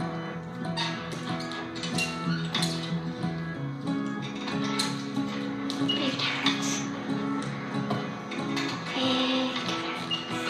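Background music with guitar: steady held chords, the harmony shifting about a third of the way through.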